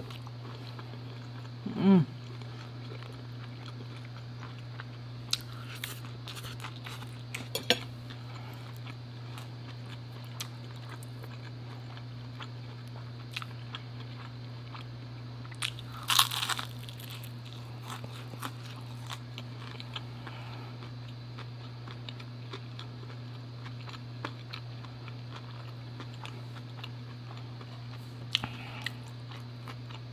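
Close-miked eating: small mouth clicks and chewing, with one loud crunching bite into crisp fried food about halfway through. A steady low hum runs underneath.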